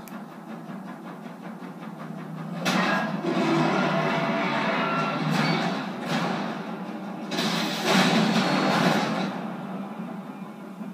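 Film soundtrack played from a screen and picked up by a room microphone, thin in the bass: a music bed with two loud, noisy surges of sound effects, one about three seconds in and another about seven seconds in.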